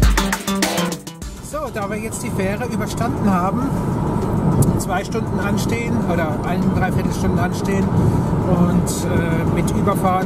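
Background music stops about a second in, giving way to a car's steady engine and road noise heard inside the cabin while driving.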